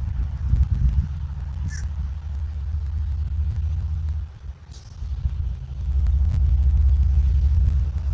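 A loud, low outdoor rumble picked up by the nest-cam microphone, dipping briefly just after four seconds. Over it come two short, high bird calls, about two seconds in and just before five seconds.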